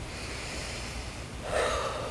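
A tearful woman at a lectern microphone sniffling and drawing a breath near the end as she composes herself; the sniffs are a sign of her crying.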